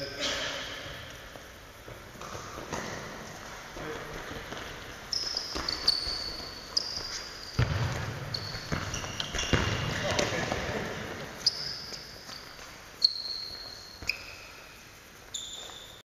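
Football being kicked and bouncing on a sports-hall floor, about ten sharp strikes that echo in the big hall. Players' voices and calls run underneath.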